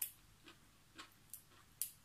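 Faint, sharp clicks and snaps, about five in two seconds, from fingers picking apart fresh greens or vegetable stems.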